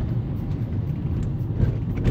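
Steady low rumble of a car's engine and road noise, heard from inside the cabin while it drives along a city street.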